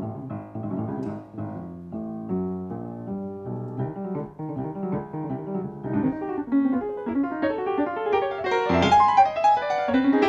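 Grand piano played solo in a fast run of notes that climbs into the upper register and grows louder in the second half.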